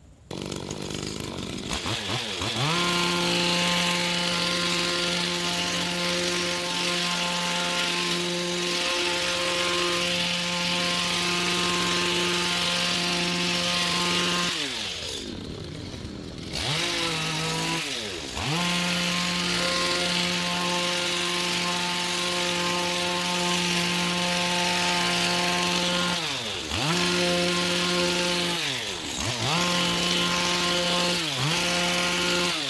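Stihl FS85 two-stroke trimmer engine driving a hedge trimmer attachment. It comes in suddenly and climbs to full revs over about two seconds, then holds a steady high whine. The throttle is let off about halfway through, so the pitch falls, and it is revved back up. It drops off twice more briefly near the end.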